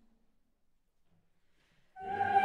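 Near silence: room tone before a take, with the choir's first sustained note starting at the very end.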